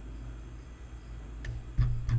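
A few sharp computer mouse clicks in the last half-second, over a steady low electrical hum.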